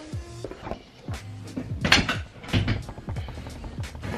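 Background music under a run of knocks and clatters from things being handled at a wardrobe, the loudest about halfway through.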